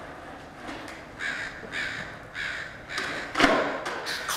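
A bird gives about five short, harsh calls in quick, even succession, like cawing. Near the end comes a loud, sharp clack of a skateboard striking concrete.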